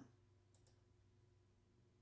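Near silence with a faint computer mouse click about half a second in, two quick ticks close together, over a faint steady hum.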